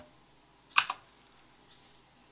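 A single sharp keystroke on a computer keyboard, the Tab key, about a second in, followed by a much fainter tap near the end.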